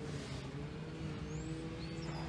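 The 6.7L Power Stroke V8 turbo-diesel of a 2011 Ford F-550 idling, heard from inside the cab as a steady low hum with faint pitched tones. A few faint high chirps come near the end.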